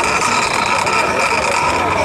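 A horn blown in one long, steady blast, several tones sounding together, over the noise of a crowd.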